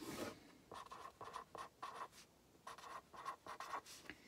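Pen writing on paper on a clipboard: a run of short, faint scratching strokes as words are handwritten.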